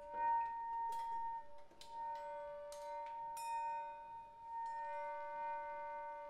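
Freely improvised drum-and-saxophone music: two held, ringing tones overlap throughout, cut by a handful of sharp metallic strikes, the loudest just after the start.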